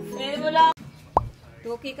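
A short cartoon-style 'plop' sound effect about a second in: a single quick, falling tone. Just before it, a voice over music cuts off abruptly.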